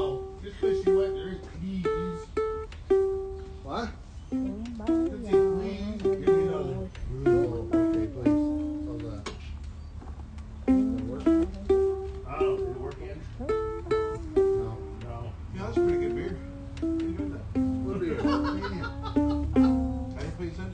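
Ukulele picked note by note, playing a melody whose phrase comes round again about halfway through, with voices talking in the background.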